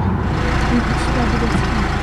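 Minibus engine idling with a steady low rumble, with faint voices over it.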